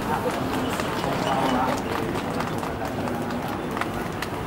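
Indistinct voices of people talking, with scattered sharp clicks and taps throughout.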